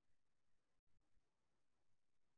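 Near silence: faint background hiss of an idle call recording, with brief dropouts where the audio gates off.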